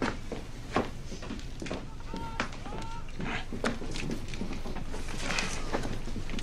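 A child's laboured breathing with two brief high whimpers about two and three seconds in, over rustling and scattered clicks of movement.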